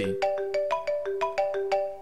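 Mobile phone ringtone playing: a quick melody of short, clear notes, about six a second.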